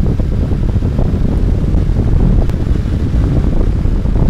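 Heavy wind rush on the microphone of a motorcycle at road speed, over a 2001 Yamaha FZ1's carbureted 1000 cc inline-four pulling through a throttle roll-on.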